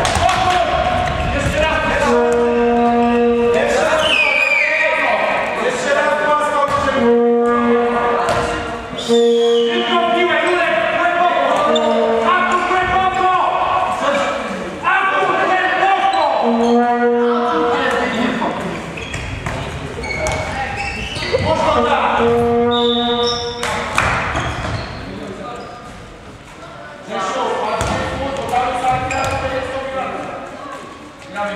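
Handball bouncing on a sports-hall floor, with shouting voices echoing around the hall. Every few seconds a held low note about a second long sounds.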